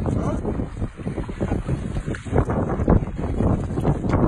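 Wind buffeting the microphone in gusts, over water lapping at the shore.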